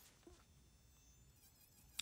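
Faint, steady high-pitched whine of a handheld rotary tool running with a small bit.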